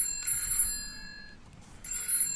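Telephone bell ringing in a double-ring pattern, heard twice about two seconds apart, each ring leaving a short ringing tone.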